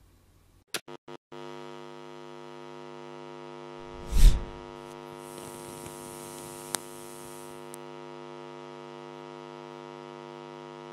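Logo-animation sound effects: a few short clicks, then a steady electric buzz like amplifier hum, with a deep boom about four seconds in and a high fizzing hiss for a couple of seconds after it.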